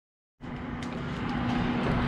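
Oil heating in a small frying pan on an induction hob: a steady hiss with a few faint crackles over a low steady hum, starting suddenly about half a second in and growing slowly louder.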